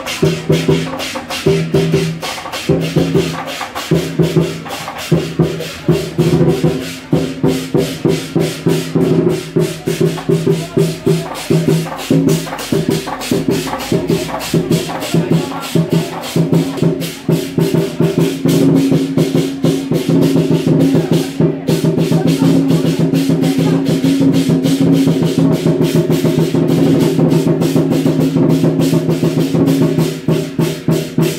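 Southern lion dance percussion: a drum with rapidly clashing cymbals and a gong, played in a fast, driving rhythm. It grows louder and more continuous past the middle.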